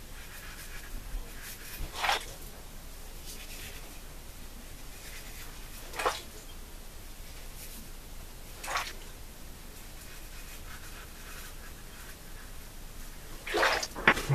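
Muhle R89 double-edge safety razor with a Laser Ultra blade scraping through two and a half days of stubble on the first pass. It makes a few short scratchy strokes several seconds apart, with fainter strokes between them.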